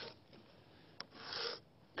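Pencil scratching marks onto a wood plank while laying out the steps of a stair stringer with a metal framing square: a short scratch at the start, a sharp click at about one second, then a longer scratch for about half a second.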